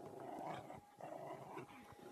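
Dogs growling faintly during rough play, in two short stretches.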